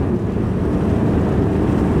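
Twin Volvo Penta D6 diesel engines of a planing motorboat running steadily under way, mixed with wind and rushing water.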